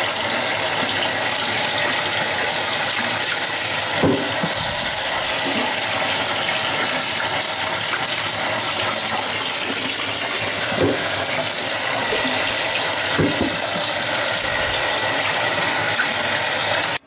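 Bathtub faucet running steadily over a foam aquarium sponge filter held in the stream to rinse it out, with a few brief soft knocks from handling.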